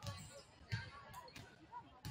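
A volleyball bounced on a hardwood gym floor, a sharp bounce about every two-thirds of a second, twice in quick rhythm, with faint voices in the gym behind.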